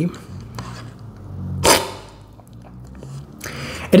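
A single short, loud slurp of coffee sucked off a cupping spoon, about one and a half seconds in, the aspirated sip used to spray the coffee across the palate when tasting. A few faint clicks come before it.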